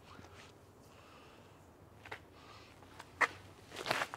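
Faint footsteps and scuffs on a dirt path as a disc golfer steps into a throw. There is a sharp click about three seconds in and a short burst of louder scuffing just before the end, as he runs up and releases the disc.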